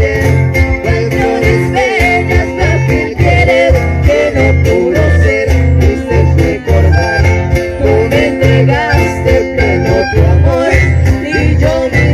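Live chamamé played by button accordions and acoustic guitars through a small PA, with held accordion chords and a regular pulsing bass beat.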